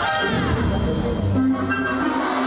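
Orchestral music from the Hogwarts castle Christmas projection show, with many instruments holding notes together. A high glide falls in pitch over the first half second.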